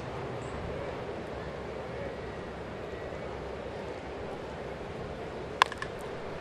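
Steady murmur of a ballpark crowd, then near the end a single sharp crack of a wooden bat meeting the ball as the batter pops the pitch up.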